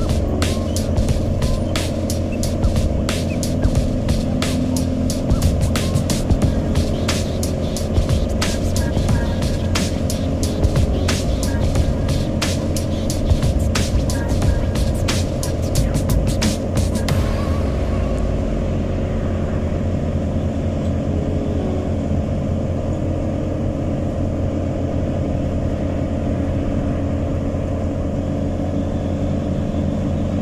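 Steady drone of engine and road noise heard from inside a moving vehicle at highway speed. Frequent irregular sharp clicks or rattles sound over it until a little past halfway, then stop, and the sound turns duller.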